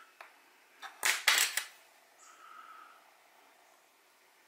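Metal tweezers clicking against a quartz watch movement's metal plate: a faint tick, then a quick cluster of three sharp clicks about a second in.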